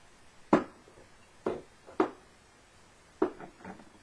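Small craft spray bottles being set down one by one into a drawer: four sharp clacks about a second apart, with a few lighter clicks after the last. Loud, as the crafter remarks.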